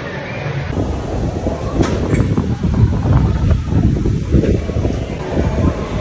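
Wind buffeting a phone microphone: a loud, uneven low rumble.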